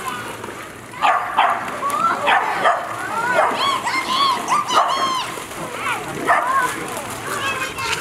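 Dogs barking in a run of short, high barks while splashing through shallow pool water, with people's voices around them.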